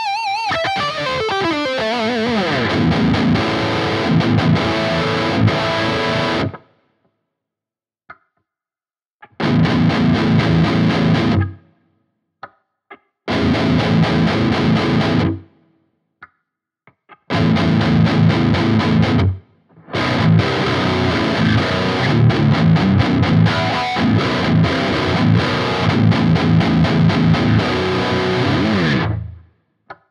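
Heavily distorted FGN J-Standard electric guitar, its active Fishman Fluence bridge humbucker set to the 'Modern Active High Output' voice, playing unaccompanied metal riffs. The first phrase opens with a note sliding down in pitch. Next come three short bursts of about two seconds with silent breaks between them, then a longer riff that stops shortly before the end.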